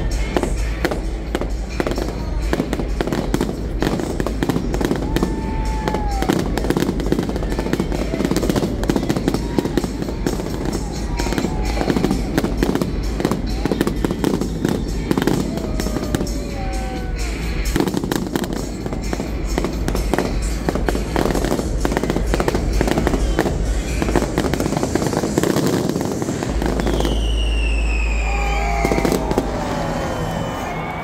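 Fireworks display going off continuously: a dense, rapid barrage of bangs and crackling from many shells bursting, over a deep rumble. Near the end a whistle falls in pitch.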